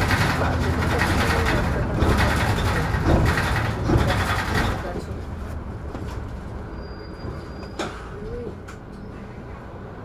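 Cabin noise of an articulated Mercedes-Benz Citaro G bus rolling downhill: engine and road rumble that drops away about halfway through as the bus slows almost to a stop. A brief high tone sounds near the end.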